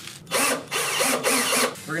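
Cordless drill running for about a second and a half, driving a screw into a table frame, its whir wavering in pitch.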